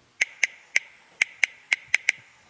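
Smartphone on-screen keyboard key-press clicks, seven short sharp ticks at an uneven typing pace, one per letter as a short message is typed.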